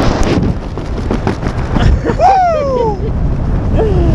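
Wind buffeting the camera microphone in a tandem skydive, a loud rush at first that settles to a lower rumble as the parachute opens. About two seconds in, a person lets out a yell that falls in pitch.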